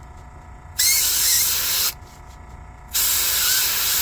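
Master Airbrush dual-action airbrush spraying paint in two short hissing bursts of about a second each, the first starting about a second in and the second about three seconds in.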